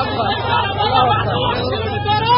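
Several men talking and calling out over the steady low drone of a running engine.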